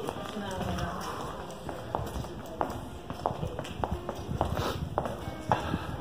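Footsteps of people walking on a hard floor, about two sharp steps a second, with voices in the first second.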